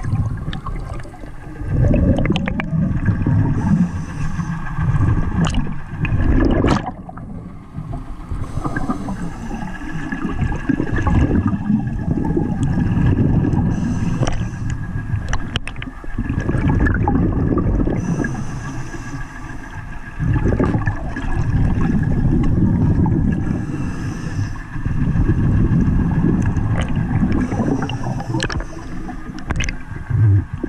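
Muffled water noise picked up by a camera held underwater: low gurgling and rumbling that swells and fades every few seconds as the camera moves, with a few light knocks.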